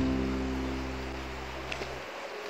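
Background music: a few held instrument notes ringing on and slowly fading away near the end.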